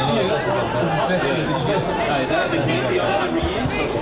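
Indistinct chatter: several people's voices talking over one another close to the microphone, at a steady level.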